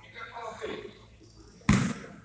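A basketball bouncing once on a hardwood gym floor, a single loud thud near the end, with spectators' voices murmuring in the echoing hall.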